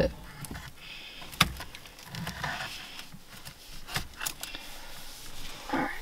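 A stock steering wheel being slowly worked off its steering shaft with its wiring fed through: low rubbing and rustling of plastic and wire, broken by a few sharp clicks about a second and a half in and twice around four seconds in.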